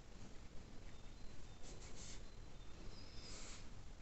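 A fine watercolour brush dabbing paint onto watercolour paper: faint, brief scratchy touches, the clearest a little under two seconds in and again about three and a half seconds in, over a low steady hiss.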